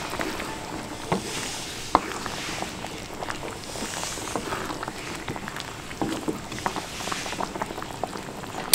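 Wooden spatula stirring a pan of thick coconut-milk curry: the liquid sloshes, with scattered light knocks and scrapes of the spatula against the pan.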